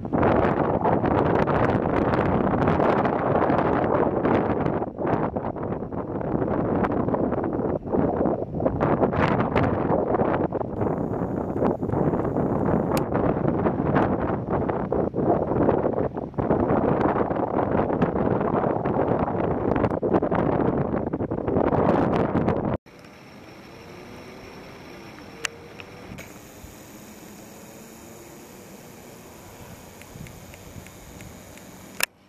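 Wind buffeting the microphone, loud and gusting unevenly. About three-quarters of the way through it cuts off suddenly, leaving a much quieter, even background hiss.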